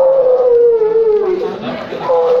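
A person wailing in distress: one long drawn-out cry that slowly sinks in pitch and trails off, with a fresh wail starting right at the end.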